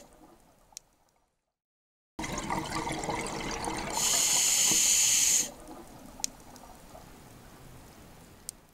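A watery sound effect for an animated logo: after a moment of silence it starts suddenly about two seconds in, swells into a loud rushing hiss for about a second and a half, then drops away to a faint wash with a couple of sharp ticks.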